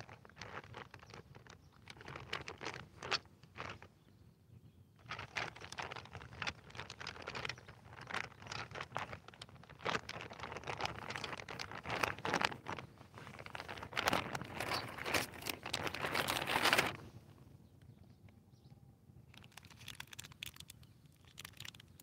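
Irregular rustling and crinkling close to the microphone, with many small clicks: things being handled and rummaged through, likely packaging. It goes on from about five seconds in and stops a few seconds before the end.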